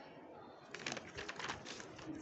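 A sheet of paper rustling and crinkling in a quick run of short crackles from a little under a second in, as it is lifted and turned over by hand.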